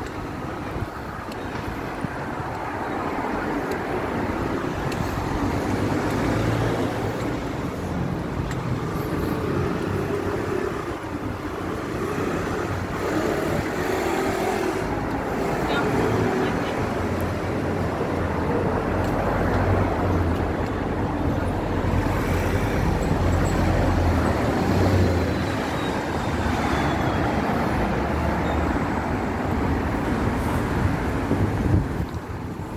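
Street traffic: cars passing and engines running with a steady low rumble, tyres hissing on a wet road.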